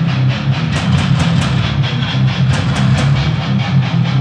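Live heavy metal band playing an instrumental passage: a loud, rhythmic, distorted electric guitar riff over drums, with clusters of cymbal hits.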